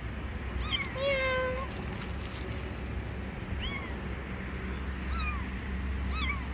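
A young kitten mewing several times, in short, high-pitched cries that rise and fall.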